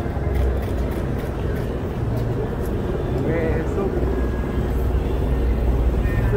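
Steady low rumble of a vehicle engine running close by, with faint voices murmuring about three and a half seconds in.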